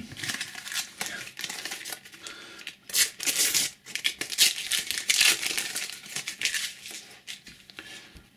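A Panini sticker packet being torn open and its paper wrapper crinkled by hand, with the stickers rustling as they are pulled out. The loudest rips and crinkles come about three seconds in and again around five seconds.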